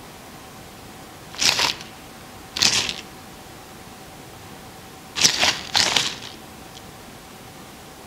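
Plastic snack packaging rustling in four short bursts, two pairs of crinkles a few seconds apart, over a faint steady hum.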